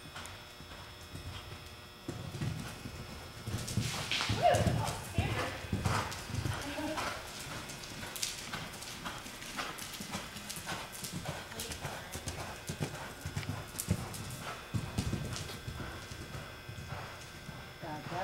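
Hoofbeats of a Hanoverian horse moving over the dirt footing of an indoor arena, a run of irregular thuds that begins about two seconds in.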